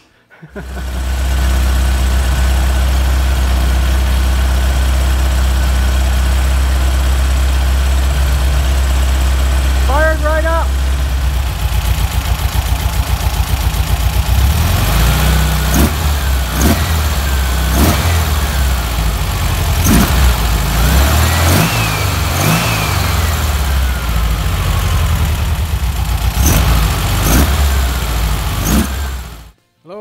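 Newly built air-cooled engine in a Porsche 356 replica running on its first fire, at a steady idle for the first ten seconds or so, then with its speed rising and falling for the rest.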